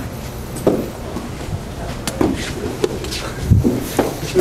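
Training-hall ambience: a steady low hum with faint scattered voices and a few light clicks and knocks as a group practises.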